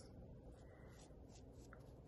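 Faint, soft scratching strokes of a paintbrush spreading glue over a canvas sneaker, against near silence.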